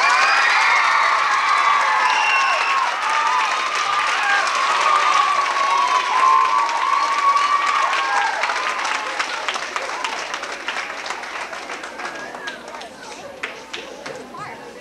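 An audience applauding and cheering, with high shouts and whoops over the clapping, dying down gradually over the second half.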